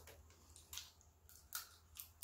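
Faint, wet eating sounds from crab eaten by hand, meat sucked from the shells and the shells picked apart: three short, soft squishy clicks in an otherwise near-silent room.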